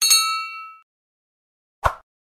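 Notification-bell ding sound effect of a subscribe-button animation: one bright bell-like ring with several high tones that dies away within about a second. A short click follows near the end.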